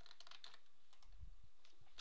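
Computer keyboard and mouse clicks as a piece of code is copied and pasted: a handful of quick taps in the first half second and a few more near the end.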